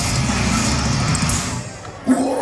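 Live metalcore band playing loud, with heavy distorted guitars and drums, heard from within the crowd; the music drops away in the last half second.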